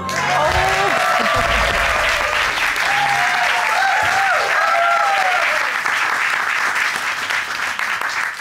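Studio audience applauding steadily, with a few voices whooping and cheering over the clapping for the first several seconds.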